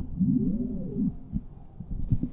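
A brief wordless voice sound, a low hum that rises and falls in pitch for about a second, followed by a few low thumps.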